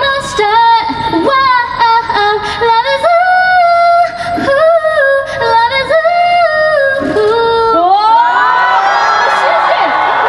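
A woman singing a short phrase of a K-pop song live into a microphone, one held, gliding melody line with no backing track. About eight seconds in, the audience breaks into cheering and screams.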